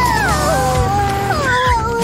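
A sad, drawn-out wail of dismay, falling in pitch in two steps, over children's background music.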